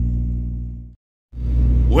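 Idling diesel engine of a parked semi truck, a steady low hum heard inside the cab. It fades out about a second in, cuts to silence briefly at an edit, and comes back.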